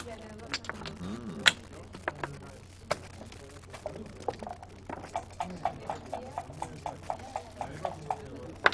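Backgammon checkers and dice clicking on the board during play: scattered sharp clicks in the first few seconds, then an even run of about four clicks a second in the second half.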